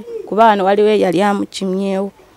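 Speech only: a woman talking into the microphone, with some drawn-out vowels.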